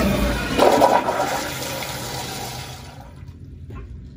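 Commercial toilet with a chrome flushometer valve flushing: a loud rush of water that peaks about a second in and fades away by about three seconds.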